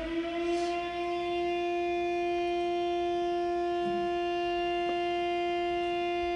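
A motor-driven warning siren finishes winding up in pitch in the first second, then holds one steady tone.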